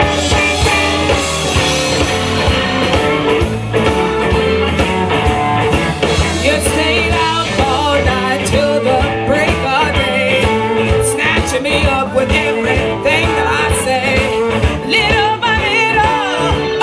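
Live blues band playing a rock-and-roll style number: electric guitars, bass, drum kit and keyboard, with a woman singing.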